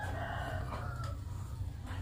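A faint, drawn-out animal call that fades out about a second in, over a steady low hum.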